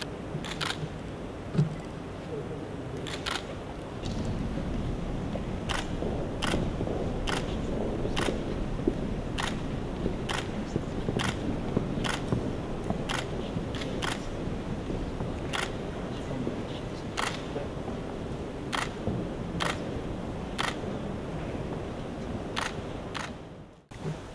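Camera shutters clicking again and again at irregular intervals, roughly once a second, over steady low room noise. There is one louder low thump about a second and a half in.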